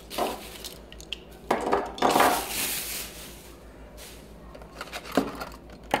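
Die-cast toy cars in plastic blister packs being handled and laid on a wooden table: plastic rustling and clicking in irregular bursts, the longest about two seconds in, with sharp taps near the end.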